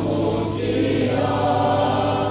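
A group of voices singing a church hymn together, with long held notes and a steady low hum underneath.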